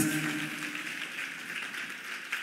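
A congregation applauding: an even patter of clapping that slowly fades away, with the last of a man's amplified voice dying out at the very start.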